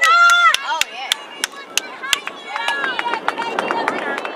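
Sideline spectators yelling and shrieking excitedly as a shot goes toward goal, over sharp claps about three a second. The voices are loudest at the start, ease off, then rise again near the end.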